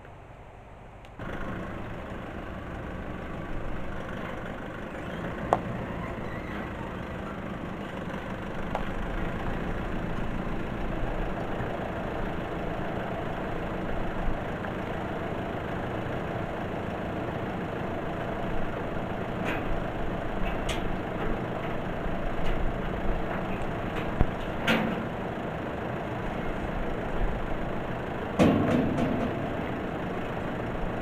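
A Nissan SUV's engine starts about a second in and runs steadily while it backs a trailer into place and then idles. A few sharp knocks and a short clatter from the trailer and its load come in the second half, loudest near the end.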